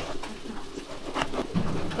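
Long fish knife slicing through a tomato on a plastic container lid, with a few light sharp taps as the blade meets the plastic.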